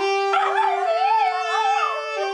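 A dog howling along to a saxophone: a wavering howl that rises and falls over the saxophone's held notes, which step up once about a second in.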